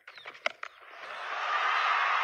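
Cricket bat striking a fast delivery with one sharp crack about half a second in. A stadium crowd's cheering then swells steadily as the ball is hit for six.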